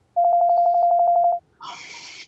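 An electronic video-call tone: one steady beep about a second long with a fast flutter. It is followed near the end by a short hissy burst.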